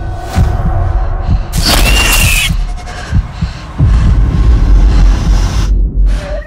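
Dramatic title-card sound design: a loud, deep throbbing bass drone with irregular pulses, and a bright noisy swell carrying a high held tone about two seconds in.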